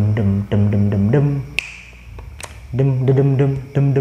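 A man's voice sounding out a rebana drum rhythm with short held syllables in place of the bass and ketipung strokes. Two sharp clicks come in a short pause midway.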